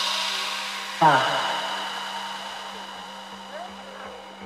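Melodic techno in a breakdown. A synth stab with a falling pitch hits about a second in over a steady low drone and a fading wash of noise, and a faint kick pulse comes up toward the end.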